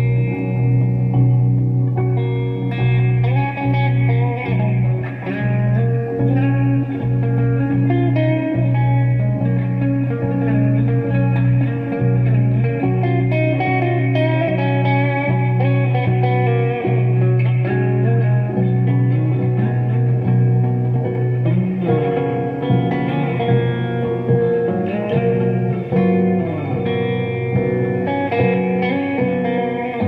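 Extended-range electric guitar played with effects and reverb: picked melodic lines and chords ring over a sustained low drone. About two-thirds of the way through, the drone gives way to shifting bass notes.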